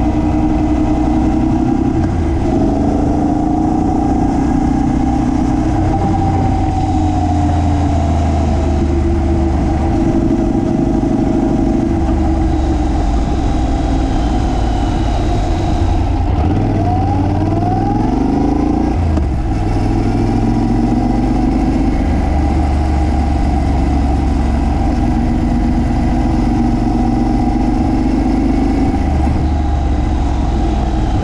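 Honda NC750X motorcycle's parallel-twin engine running while the bike is ridden, its pitch holding steady for stretches and rising and falling with throttle and gear changes a little past the middle, over wind and road noise.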